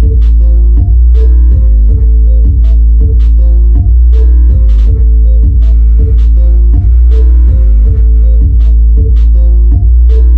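Harman Kardon Onyx Studio 4 speaker playing bass-heavy music loud: a continuous deep bass under sustained keyboard chords, with a sharp beat about twice a second.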